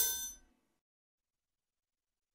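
A programmed FL Studio drum beat stops: its last sound rings and fades out within about half a second, then the track falls completely silent.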